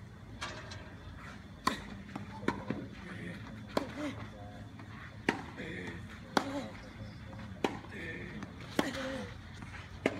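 Tennis rally: a series of sharp pops from the ball hitting racket strings and the hard court, about one every second or so. Short voices, likely players' grunts or spectators, follow some of the shots.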